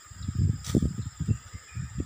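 Wind buffeting a phone's microphone in irregular low gusts, over a steady high-pitched insect drone.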